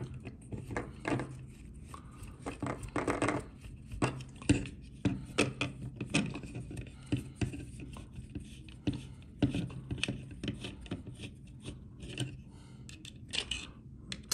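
Small 2.5 mm hex screwdriver turning screws into a 3D-printed plastic fan mount: a run of irregular small clicks and scrapes of metal on screw and plastic.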